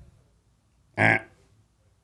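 A single short hesitant "uh" about a second in, a person stalling while thinking of an answer to a question; quiet before and after it.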